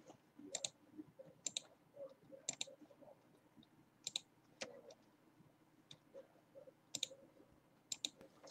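Faint, scattered clicking from operating a computer, about a dozen sharp clicks over several seconds, several of them in quick pairs.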